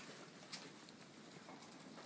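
Faint footsteps on a straw- and dust-covered barn floor: a few soft, separate steps.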